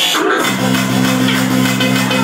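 Loud frenchcore hardcore electronic music played over a club sound system. The heavy bass drops out for a moment at the start and comes back in about half a second in, then runs steadily.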